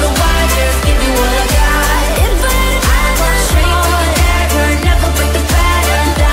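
Electronic dance-pop song: sustained synth chords and a female sung vocal over a deep kick drum, about three beats every two seconds.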